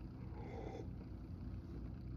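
A faint sip of beer from a glass, about half a second in, over a low steady room hum.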